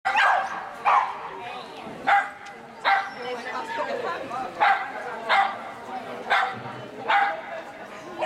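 A dog barking sharply, about eight single barks roughly a second apart, over the murmur of people talking in a large hall.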